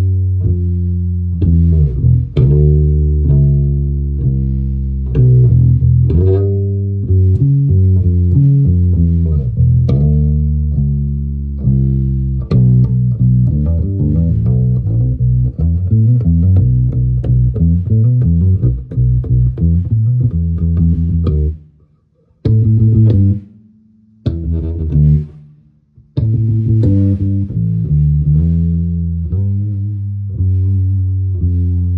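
A 1960s Silvertone 1442L electric bass built by Danelectro, with original flatwound strings and a single low-output lipstick pickup, played through an amplifier as a flowing bass line of low, sustained notes. About two-thirds of the way through, the line breaks into a few short notes separated by silent gaps, then carries on.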